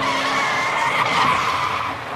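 Phonk track in a breakdown with the drums and bass gone, leaving a sustained, wavering high squeal-like tone that fades toward the end.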